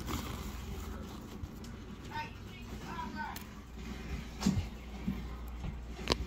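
Faint background voices in a room over a low steady hum, with a few light clicks and taps in the second half.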